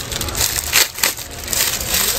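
Clear plastic packaging crinkling and crackling as hands grip and handle it, with a brief lull about a second in.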